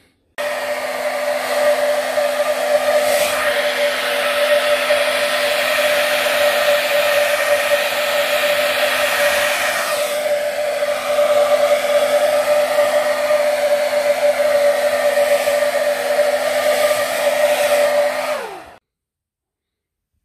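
Hand-held hair dryer switched on just after the start and blowing steadily, a rushing of air with a constant whine, on a puppy's wet coat. It is switched off about two seconds before the end, its pitch falling as the motor spins down.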